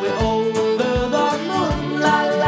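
Upbeat folk band music: banjo, acoustic guitar and fiddle playing an instrumental passage over a steady beat.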